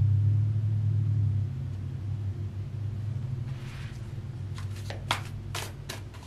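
A low steady hum, louder for the first second and a half and then softer, with a few short clicks near the end.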